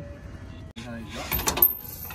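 Metal clinks and rattles of tools and suspension parts being handled on a truck's front control arm, with a cluster of sharp clicks about a second and a half in.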